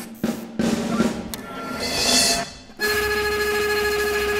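Contemporary ensemble music with drum kit: a few sharp drum strokes, then a swelling roll, then a steady held note that comes in suddenly about three quarters of the way through.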